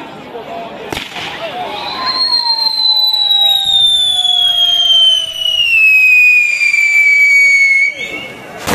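A pole-mounted firework fountain whistling: one loud, shrill whistle sets in about two seconds in and slowly falls in pitch until it cuts off at the end, with a fainter lower whistle alongside for part of the time. A single sharp crack comes about a second in, as the device lights.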